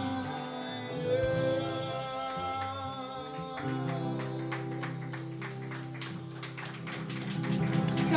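Live band music: acoustic guitars, bass and drums with some singing. Steady strumming picks up about three and a half seconds in.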